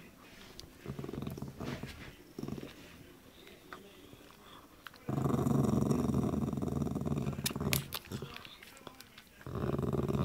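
Cavalier King Charles spaniel growling low over his bone, a grumpy warning to whoever comes near while he eats. A short growl comes first, then a long, loud one about five seconds in that lasts some three seconds, with a few sharp clicks near its end, and another starts near the end.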